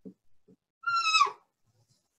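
Marker squeaking on paper as a line is drawn: a few soft taps of the pen, then one short high squeal, falling slightly in pitch, about a second in.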